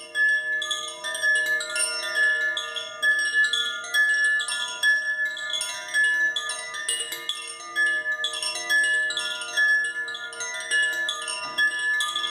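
A hand-held heart chakra chime swung gently, its clapper striking again and again at irregular moments, a few times a second. Several sustained bell-like notes ring and overlap.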